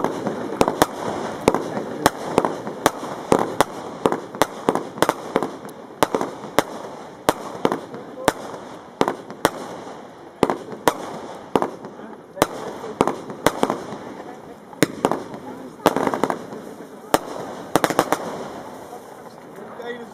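A consumer fireworks cake, Lesli Vuurwerk's "Tatoo!", firing shot after shot: sharp bangs, about two a second at an uneven pace.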